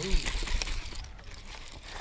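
Baitcasting reel being worked by hand, giving a rapid ratchet-like clicking.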